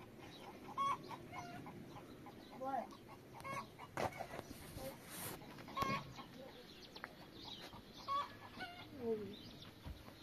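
Chickens clucking, in short scattered calls, with a sharp knock about four seconds in.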